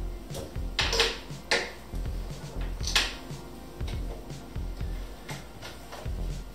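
Soft background music, with a few sharp clicks and clinks as a metal jigger, glass and bottles are handled at a bar cart, the loudest about a second, a second and a half, and three seconds in.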